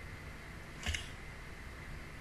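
Steady faint microphone hiss with one short, sharp click about a second in, a quick double snap close to the microphone.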